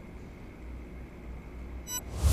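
Quiet pause on the broadcast line: a steady low hum under faint background hiss. Right at the end comes a short high electronic blip as an on-screen graphic animates in.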